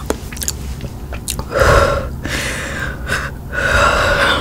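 Close-miked mouth sounds of eating: wet clicks near the start, then two breathy swells, one about a second and a half in and one near the end.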